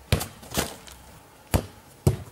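A football being kicked: three sharp thumps of foot on ball in two seconds, the middle one longer.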